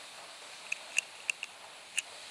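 A handful of short, high squeaks, irregularly spaced, over a faint steady hiss.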